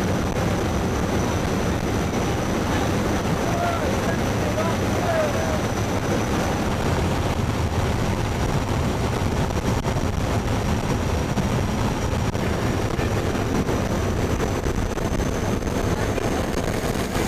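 Steady, loud drone of a turboprop jump aircraft's engines and propellers, mixed with wind rushing past the open jump door, with a thin high whine held over it.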